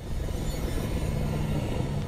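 A steady low rumble with a faint low hum under it, starting suddenly and holding level, from the cartoon's soundtrack.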